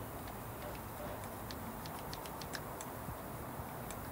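Scattered light clicks and ticks, irregularly spaced, as a toothbrush scrubs over a conventional fishing reel and its small parts, over a steady faint background hum.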